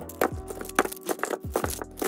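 Metal Beyblade tops clicking and clacking against one another in a quick irregular series as they are picked up and dropped into a cloth bag, over background music.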